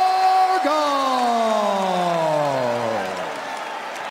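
Ring announcer's voice drawing out the winner's name: a held note, then from about half a second in one long call that slides steadily down in pitch for about two and a half seconds, with crowd noise underneath.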